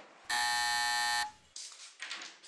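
Electric doorbell buzzer sounding once: a single steady buzz about a second long.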